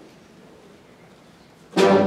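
A hushed hall, then a concert band comes in suddenly with a loud, full sustained chord near the end.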